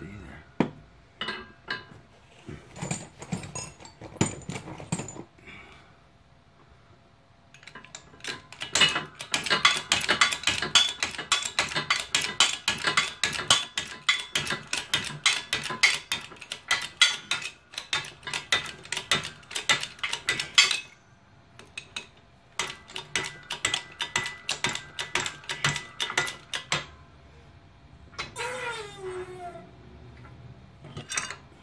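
Rapid metallic clicking, about five clicks a second, in two long runs as a shop press works a worn bushing out of a Jeep JK upper control arm. Near the end there is a short falling squeak.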